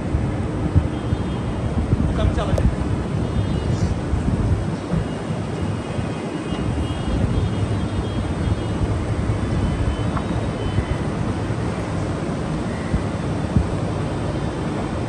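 Low running of a Toyota Fielder's 16-valve DOHC four-cylinder engine as the car is driven slowly, under a steady rumble of wind on the microphone.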